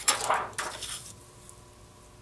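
Clear plastic sheet being handled and laid flat over drawing paper, a short crinkly rustle that fades within about a second.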